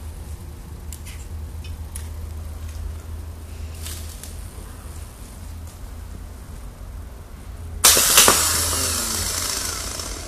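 A few faint clicks of clamps and leads being handled. Then, about eight seconds in, a car starter motor on the bench, powered straight from a car battery, whirs loudly all at once and winds down with a falling whine.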